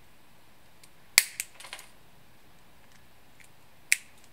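Side cutters snipping off the surplus arm of a plastic cross servo arm: a sharp snap about a second in with a few small clicks after it, and a second snap near the end.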